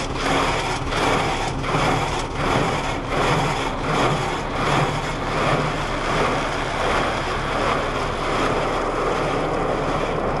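Automatic car wash heard from inside the car: water spray and cloth brushes swishing over the windshield and body in a regular beat, about three strokes every two seconds. Near the end it turns into a steady rush of water and cloth.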